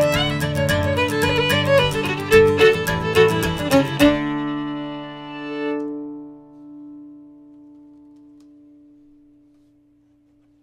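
Fiddle and strummed acoustic guitar playing a fast Irish reel in D, stopping together about four seconds in on a final chord. The last notes ring on and slowly fade away.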